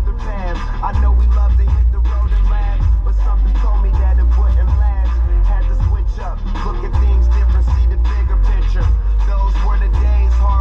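A hip-hop track with rapping plays loudly through a car stereo, with long, heavy bass notes.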